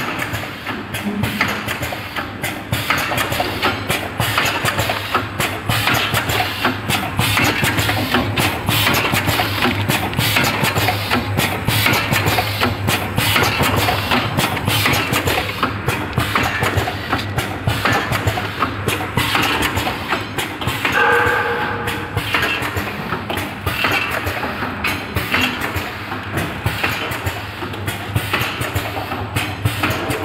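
Four-side-seal vertical packaging machine running, with a fast, continuous clatter of clicks and knocks from its mechanism over a steady motor hum.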